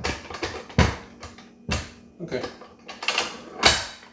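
Tilt-head stand mixer being handled: several sharp clacks and knocks as its head is lowered and locked down over the steel bowl, the loudest near the end.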